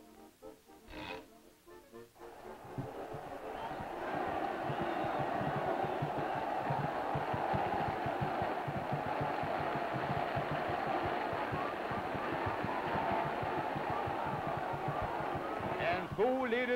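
Old cartoon soundtrack: a brief stretch of light music with a single thud about a second in, then a dense crowd murmur of many voices that builds from about two seconds in and holds steady and loud.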